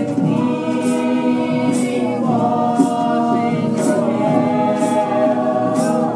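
A group of voices singing a song together, holding long notes.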